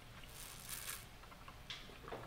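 Faint sipping through a plastic straw from a plastic cup: a soft hissing suck lasting most of a second, then a shorter one near the end.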